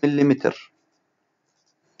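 A man's voice briefly saying a number, followed by a pause of over a second with only faint, barely audible ticks near the end.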